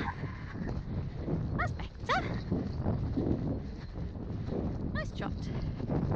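Pony's hoofbeats and wind buffeting a helmet-mounted camera mic as he moves at speed over a wet grass track. Three short calls, each falling in pitch, cut in about a second and a half in, at two seconds, and near the end.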